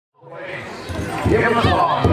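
Powwow drum group starting a song: a high singing voice fades up from silence, and the big drum's steady beats come in about a second in, roughly one every 0.4 seconds.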